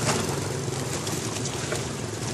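Boat engine running steadily, a low drone under a haze of wind and water noise.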